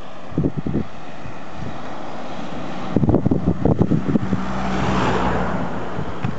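Gusty wind buffeting the microphone in irregular low rumbles, while a car passes on the road, its engine and tyre noise swelling to a peak about five seconds in and then fading.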